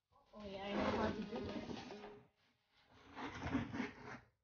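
A woman's voice making low sounds without clear words, over the scraping and rustling of a cardboard box being opened and handled. It starts about a quarter second in and breaks off briefly past the middle before going on.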